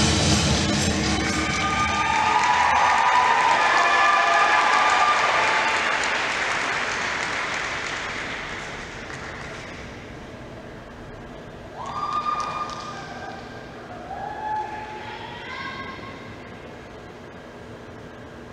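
Dance music ends and the audience applauds and cheers, with whoops over the clapping, dying away over several seconds. A few single shouts from the crowd follow in the quieter second half.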